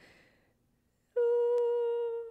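A woman humming one steady, held note, starting about a second in after a brief silence.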